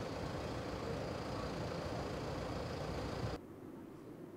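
Outdoor street ambience: a steady hum of road traffic with a faint high whine. It cuts off suddenly about three and a half seconds in, giving way to quieter indoor room tone.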